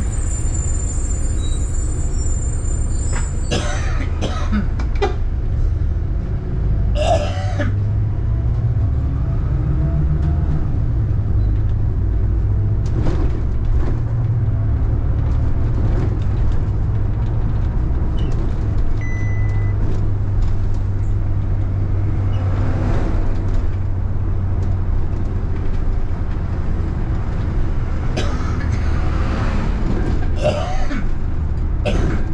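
City bus driving in traffic: a steady low engine drone, rising briefly about ten seconds in, with several short hisses scattered through.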